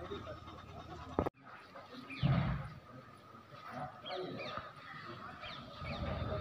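Faint outdoor chatter of several people, with the sound cutting out for a moment about a second in and a single low thump about two seconds in.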